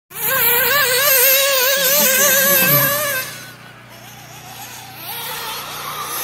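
Nitro engine of a WRC SBX-2 1/8-scale RC buggy (Alpha Dragon IV) running at high revs, its high-pitched whine wavering quickly with the throttle. About three seconds in it drops away sharply, and near the end a fainter rising whine comes back as the buggy accelerates again.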